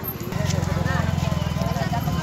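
A motorcycle engine idling with a steady, rapid low throb that strengthens about a third of a second in, under the chatter of a crowd.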